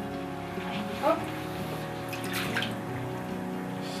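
Water sloshing and dripping as a wooden papermaking frame is dipped into a plastic tub of paper-pulp slurry, under steady background music. A woman says a short word about a second in.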